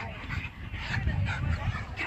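A dog whining with short yips.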